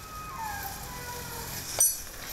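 A heavy iron leg chain on an elephant clinks once, sharply and with a metallic ring, near the end as the shackle is handled. Before it, faint tones fall slowly in pitch.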